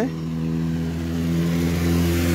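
Road traffic: a motor vehicle's engine hums steadily, and the hiss of tyre noise swells toward the end as a car or pickup truck passes along the road.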